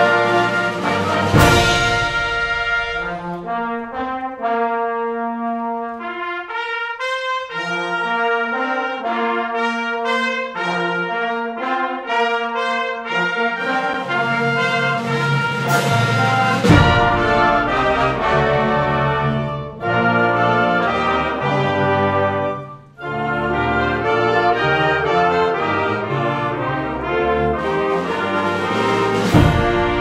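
A wind ensemble plays live, with sustained brass and woodwind chords over low brass and bass. A thinner, lighter passage in the middle drops the low end. Loud percussion crashes come about a second and a half in, again near 17 seconds and just before the end, with a short break about 23 seconds in.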